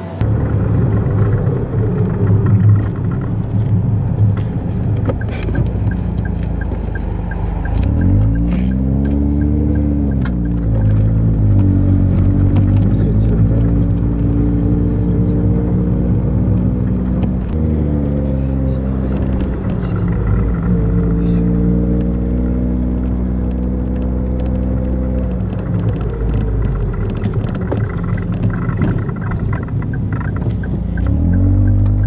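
Car engine and road noise heard from inside the cabin. The engine's pitch rises and falls several times as it accelerates and eases off.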